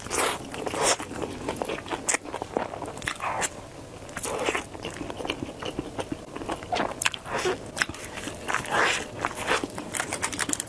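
Close-miked eating of a crisp fried, seed-coated sandwich: bites and chewing with irregular crunches coming every half second or so.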